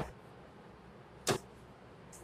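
Marker pen on a whiteboard: a scratchy stroke trailing off at the start, then one quick swipe about a second in.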